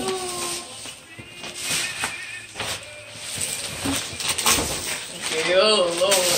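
Indistinct voices in a small room: a drawn-out voice fades at the start and returns near the end. In the quieter middle there are a few short clicks and handling noises.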